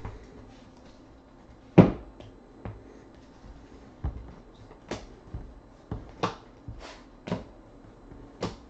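Stacks of baseball cards knocked and set down on a tabletop as they are handled and squared: a run of sharp, short knocks, the loudest about two seconds in, then about one every half second to second.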